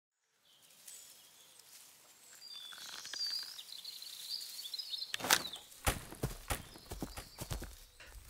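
Faint outdoor nature ambience with light bird chirps fading in after a couple of seconds, then a run of short soft knocks like footsteps from about five seconds in.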